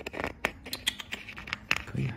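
Handling noise of a rough jade stone being turned in the hands against a pressed flashlight: a scattered run of small sharp clicks and scrapes.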